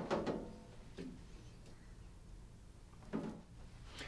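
Quiet room tone with a few soft handling knocks as a heated thermoplastic splint sheet is lifted out of a splint pan: one right at the start, a faint one about a second in, and a brief louder one a little after three seconds.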